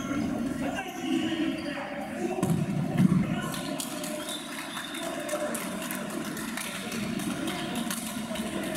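Voices calling out during an indoor futsal game in a sports hall that echoes, with the thuds of the ball and players' shoes on the court. There is a louder burst about three seconds in.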